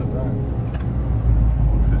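Heavy truck's diesel engine and road noise inside the cab, a steady low rumble that grows louder a little past a second in.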